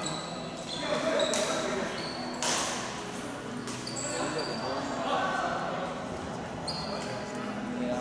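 Badminton play in a large hall: several sharp racket strikes on the shuttlecock, with short squeaks of shoes on the court floor, all echoing in the room.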